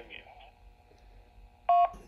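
A short two-tone electronic beep from a ham radio near the end, lasting under a quarter of a second. It is the courtesy beep that marks the end of a test transmission across the AllStar-to-DMR link.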